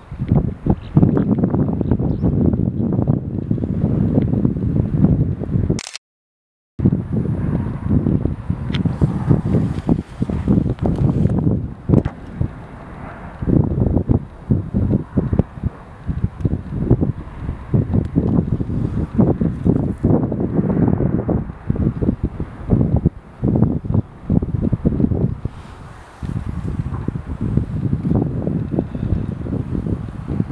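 Wind buffeting the microphone: a loud, irregular low rumble that swells and fades in gusts. The sound cuts out completely for under a second about six seconds in.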